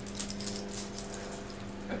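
Light metallic clinks from a schnauzer puppy's leash and collar hardware, a few in the first half second, over a steady low hum.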